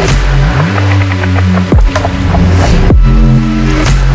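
Dark midtempo electronic bass music: heavy, sustained bass notes under chopped synth patterns, with steep downward pitch sweeps about two and three seconds in.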